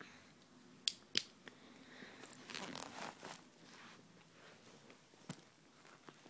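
Faint rustling and scraping of a fabric bag being handled and tugged at, with three sharp clicks, while its stuck main pocket is worked open.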